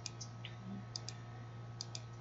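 A few faint computer mouse clicks, two of them close together near the end, over a low steady hum.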